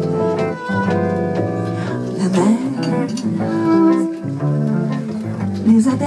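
A live acoustic jazz band plays an instrumental passage between sung lines, with a plucked upright double bass under the melody instruments.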